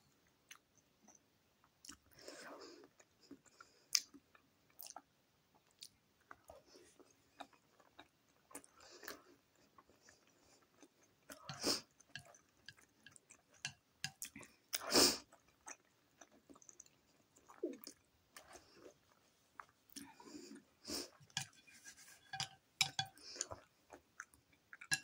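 Close-miked chewing of a mouthful of vegetable gyoza dumpling: irregular wet mouth smacks and small clicks, the loudest about fifteen seconds in.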